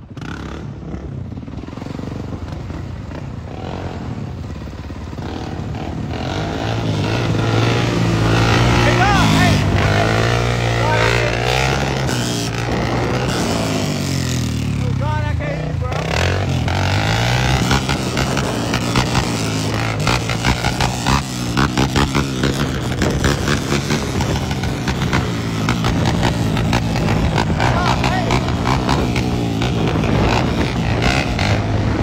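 Sport quad (ATV) engine running while riding, its pitch rising and falling with the throttle for several seconds near the middle, then holding fairly steady.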